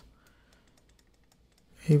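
Faint, irregular ticking of a stylus tapping on a pen tablet while writing by hand.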